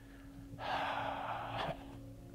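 An elderly man's long breath through his open mouth, lasting about a second, taken as he pauses mid-sentence to recall a name.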